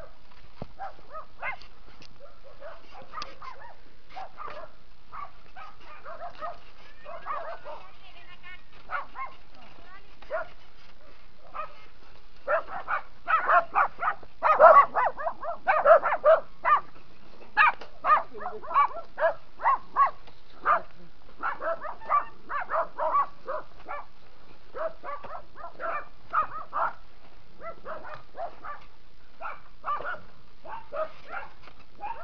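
A dog barking repeatedly over steady background noise. The barks come about one or two a second from about twelve seconds in, are loudest a few seconds later, then thin out.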